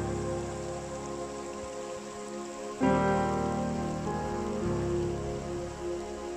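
Shallow stream running and rippling over stones, a steady rush of water, heard under slow background music whose sustained chords change about three seconds in.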